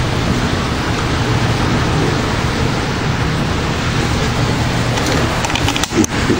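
Heavy thunderstorm rain pouring down in a steady, loud hiss. Near the end it briefly drops and a few clicks are heard.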